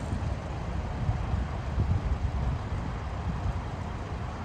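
Low, uneven rumble of wind buffeting the microphone, with a vehicle running underneath.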